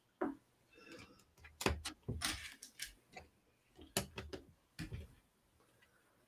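Plastic LEGO pieces clicking and clattering as they are handled and pressed together, a few faint, scattered clicks with gaps between.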